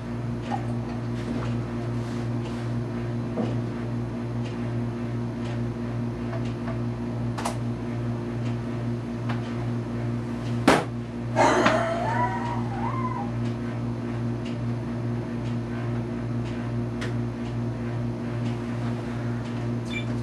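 A forceful exhalation blown hard into a handheld spirometer's mouthpiece during a pulmonary function test: a sharp click, then a rush of breath lasting a second or two about halfway through, with a wavering whine riding on it. A steady low hum runs underneath throughout.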